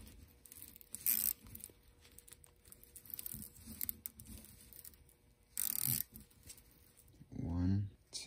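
Woven exhaust heat wrap rubbing against nitrile gloves as it is wound around a stainless turbo manifold: low rustling and scraping, with two short scratchy bursts, about a second in and at about six seconds.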